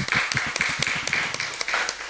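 Audience applauding: a short burst of many hands clapping that dies away near the end.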